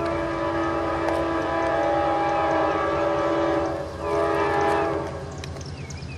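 Multi-chime Nathan K5HR24 air horn on a GE ES44 diesel locomotive sounding a crossing warning: one long blast of several chime tones together, a brief break, then a second shorter blast about four seconds in. A low diesel rumble from the approaching locomotive runs underneath.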